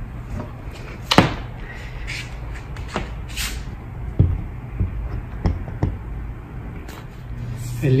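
A few scattered knocks and clicks of a power drill being handled and set against a wall, the sharpest about a second in; the drill's motor is not heard running.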